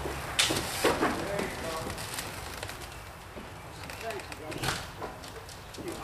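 Two sharp knocks close together near the start, then faint shouted voices of a work crew.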